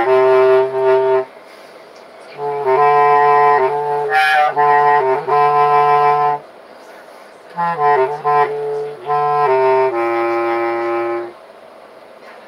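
Bass clarinet played in three short phrases of long held low notes, with brief pauses between the phrases.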